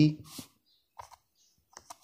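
A few light taps and clicks on a touchscreen while a letter is handwritten digitally: a pair about a second in and a couple more near the end.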